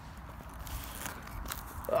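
A metal-detecting spade being pushed into stubble-covered soil, a faint scraping of straw and earth that grows louder in the second half.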